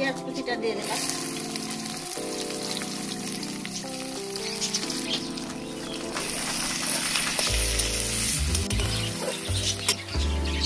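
Oil sizzling in a kadai as dried red chillies, a bay leaf and sliced onions fry and are stirred with a spatula; the sizzle starts about a second in and keeps up, with background music underneath.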